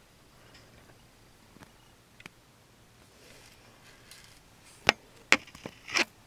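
Small metal pliers and chain being handled: a couple of faint ticks, then three or four short, sharp clicks near the end.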